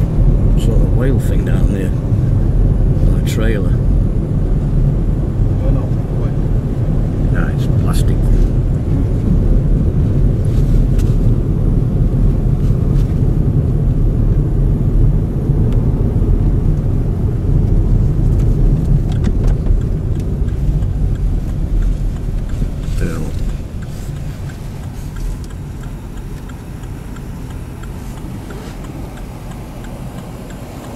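Steady low rumble of a car's engine, tyres and wind heard from inside the cabin while driving. It drops noticeably in level about three-quarters of the way through.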